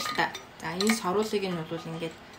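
Metal-necked water bottle's lid clicking and clinking as it is handled, a couple of sharp clicks near the start, under a woman talking.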